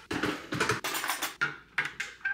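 An irregular run of light clicks and clinks: an electric kettle is set back down, then a metal spoon starts stirring and tapping inside a glass mug of hot chocolate drink.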